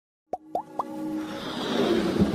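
Intro-animation sound effects over music: three quick rising bloops, each a little higher than the last, then a swelling whoosh that builds up.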